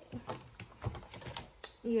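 Typing on a laptop keyboard: an irregular run of key clicks.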